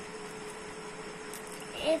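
Faint rustling of a folded paper origami model as a flap is tucked into its pocket by hand, over a steady background hum.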